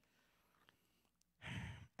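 Near silence, then about one and a half seconds in, a short breath exhaled into a handheld microphone.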